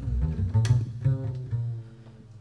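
Tango ensemble playing a short instrumental passage between sung lines, led by deep double bass notes with piano above, ending quieter.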